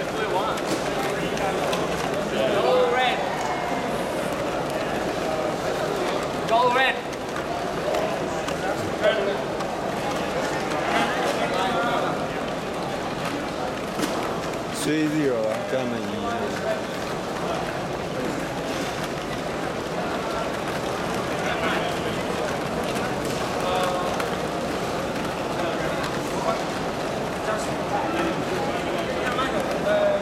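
Steady, indistinct chatter of a crowd of spectators, with a few nearer voices standing out now and then.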